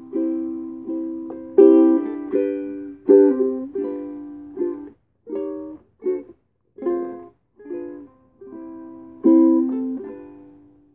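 Ukulele strummed in chords as the opening of a folk song, each chord struck sharply and either left ringing to die away or cut short, leaving brief silences between some of them.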